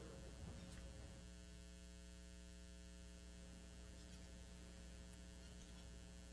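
Near silence: a steady low electrical mains hum, with a few faint rustles in the first second.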